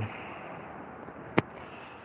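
A single sharp click about one and a half seconds in, over a steady faint hiss.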